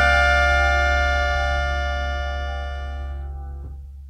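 Final chord of a jazz-reggae band ringing out on grand piano with a low bass note underneath, struck at the start and fading away; the upper notes die out near the end while the bass lingers.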